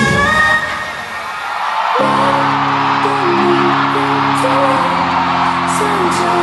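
Live pop concert sound over a hall PA: a song's music ends in the first second, and about two seconds in a sustained chord begins and holds, shifting to another chord near five seconds, over continuous audience cheering.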